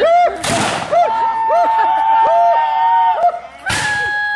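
Two reenactors' musket shots, one about half a second in and another near the end, each a sharp crack with a short ringing tail. Between them several voices give long drawn-out yells.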